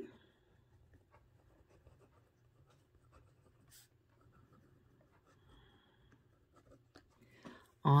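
Pen writing on lined notebook paper: faint, scratchy strokes with short pauses as words are handwritten.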